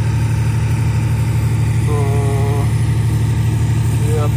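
An engine running steadily with a loud, even low hum. A short pitched sound, like a brief vocal sound, comes about two seconds in.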